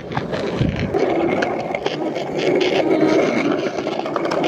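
Skateboard wheels rolling over a concrete street: a steady rough rumble with scattered clicks. There is a low thump in the first second.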